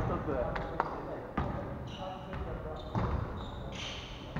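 Volleyball play in a gymnasium: the ball is struck and lands on the wooden floor in several sharp smacks, with short shoe squeaks and players' voices echoing in the hall.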